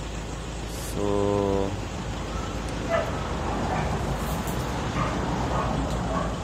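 A single steady-pitched animal call lasting under a second, about a second in, over steady background noise.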